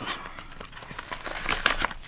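Paper banknotes and a plastic binder pocket being handled, with soft rustling and a few sharper crinkles near the end as a stack of cash is pulled out.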